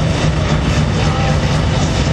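Zetor tractor's diesel engine running steadily and loudly.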